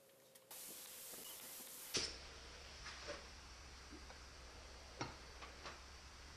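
Gravity-feed paint spray gun hissing with air as primer is sprayed. It cuts off with a click about two seconds in, and a low hum and a few faint clicks follow.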